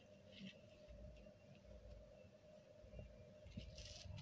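Near silence: faint background hum with a few light rustles and ticks of handling.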